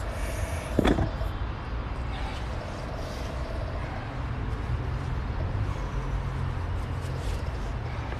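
Steady low outdoor rumble of the kind vehicle traffic makes, with a single knock about a second in.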